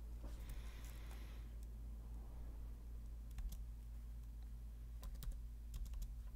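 A few faint, isolated clicks from computer controls being worked over a steady low electrical hum, with two clicks close together about five seconds in.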